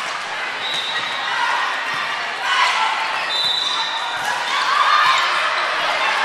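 Indoor volleyball rally: the ball is struck a few times, with players and spectators calling and shouting in a large echoing gym, the voices swelling about two and a half seconds in and again near the end.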